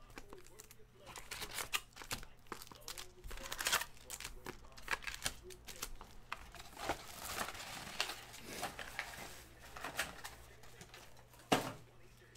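Foil wrappers of 2015 Bowman Chrome baseball card packs crinkling in the hands, in an irregular run of crackles.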